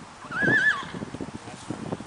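A horse whinnies once, a short quavering call of about half a second near the start, followed by scattered light taps and rustles.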